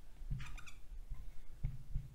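Dry-erase marker squeaking on a whiteboard while writing, with a short squeak about half a second in.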